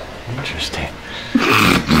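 A loud, sudden groaning vocal sound about two-thirds of the way in, as a chiropractor thrusts through a side-lying adjustment of the patient's right hip.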